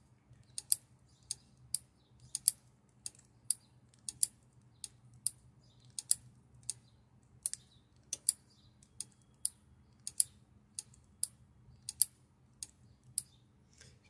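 Electromechanical relays and a panel pushbutton clicking as the button is pressed and released over and over, switching a relay refresh circuit that writes and refreshes an incandescent bulb. The sharp clicks come about two a second, some in close pairs, over a faint steady hum.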